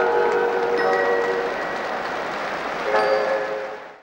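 Intro jingle for an animated logo: bell-like chime notes ringing over a steady hiss, with new notes struck about a second in and again near three seconds, fading out at the end.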